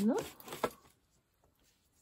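The end of a spoken word, then a couple of light clicks and rustles as a thin plastic stencil is picked up and handled over a cloth on the craft mat.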